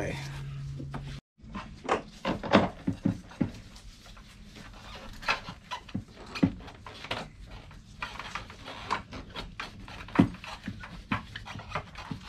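Gloved hands working inside a car's engine bay: scattered clicks, knocks and rattles of metal parts and hoses being handled as the brake booster and master cylinder are worked loose.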